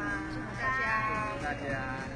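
Several people's voices calling out together in a drawn-out, wavering shout, loudest in the second half, over a steady low hum.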